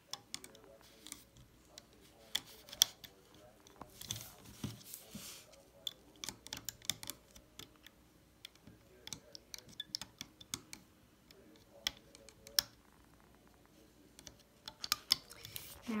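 Small irregular clicks and taps of a metal hook and rubber bands against the plastic pins of a Rainbow Loom, as bands are picked up and placed on the pins. There is a brief rustle about four seconds in.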